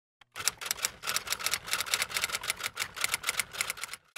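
Typewriter keys clacking in a quick, steady run of keystrokes, several a second: a typing sound effect laid under text being typed on screen.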